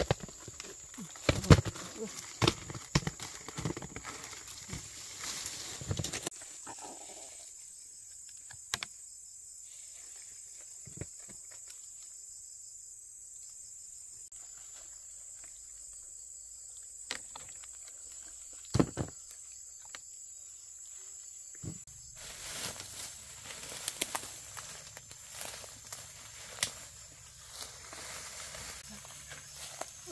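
A steady high-pitched insect drone, with a quick run of knocks and snaps in the first six seconds and a few single ones later.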